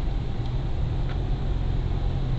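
A car driving along a road, heard from inside the cabin: a steady low rumble of engine and tyre noise.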